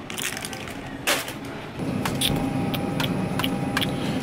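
Plastic protein-bar wrappers crinkling as they are handled, with one louder crackle about a second in. From about two seconds in, a steady hum with faint whining tones takes over.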